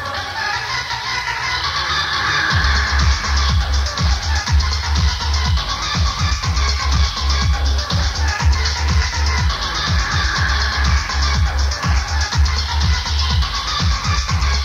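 Electronic dance music with a steady, pounding kick drum and heavy bass. The low end is thinned at the start and comes back in full about two seconds in.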